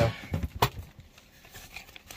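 Handling sounds: a few small knocks and one sharp click a little over half a second in, followed by faint rustling.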